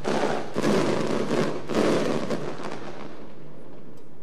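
Aerial fireworks: a quick run of shells bursting with dense crackling, which dies away about three seconds in.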